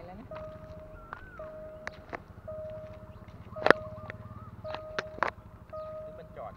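Level-crossing warning alarm sounding: a steady electronic tone that repeats about once a second while the crossing signals are active. A few sharp clicks break in, the loudest a little past the middle.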